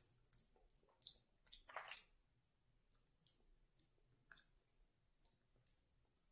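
Near silence with a few faint, scattered mouth clicks and lip smacks, a person tasting e-liquid off the lips.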